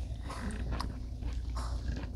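Quiet chewing and mouth sounds of people eating, with a couple of faint clicks about three-quarters of a second in.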